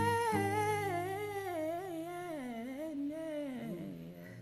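A male voice sings a wordless, wavering melodic run over a held acoustic guitar chord, the voice sliding down and fading near the end.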